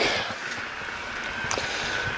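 Riding noise from an e-mountain bike rolling over a dry dirt trail: a steady rushing noise, with a single sharp click about one and a half seconds in.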